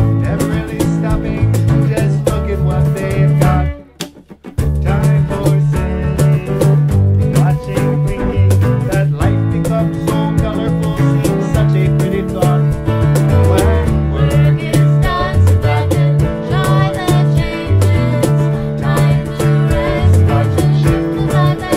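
A band playing a country-style tune on fiddle and electric guitars. About four seconds in, the whole band stops dead for under a second, then comes back in together.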